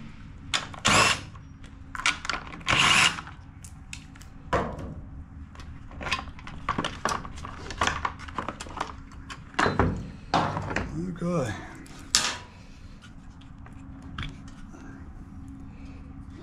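Plastic engine cover of a Honda mower engine being unclipped and lifted off by hand: irregular sharp clicks, knocks and rattles of plastic and small parts, with a few louder bursts in the first few seconds and again about ten and twelve seconds in.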